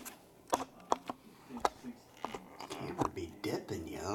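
Two small plastic dice tossed onto a tabletop, giving several sharp clicks as they bounce and tumble to rest, followed by low handling noise near the end.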